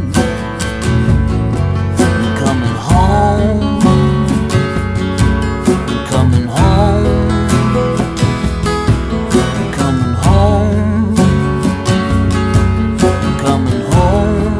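Live band playing an instrumental passage: acoustic guitar strumming over a steady drum beat, with sustained melody notes that bend in pitch.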